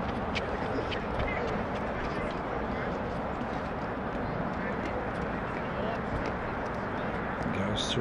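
Steady outdoor background noise with faint distant voices and a few light clicks in the first second.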